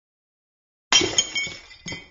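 A drinking glass smashing: a sudden crash about a second in, followed by a couple of sharper clinks of falling shards that die away.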